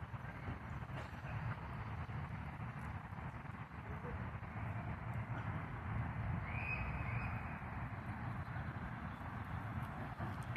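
Steady low outdoor background rumble, with one brief faint high call about six and a half seconds in.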